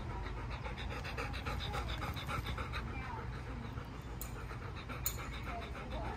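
A dog panting, quick and steady, with two sharp clicks about four and five seconds in.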